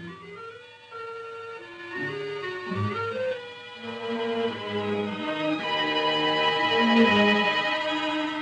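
Orchestral background music led by strings, in held notes that move in steps, building louder toward a peak near the end.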